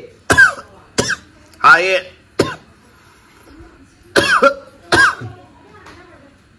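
A person coughing: about six short, loud coughs, four in quick succession in the first two and a half seconds, then two more a little after four seconds in.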